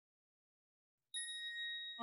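Silence, then about a second in a single high bell-like ding that holds steady, a chime tone at the very start of the musical backing track.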